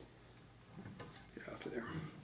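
Mostly quiet, with a few faint, short snips and rustles in the second half from scissors trimming spun deer hair on a fly-tying vise.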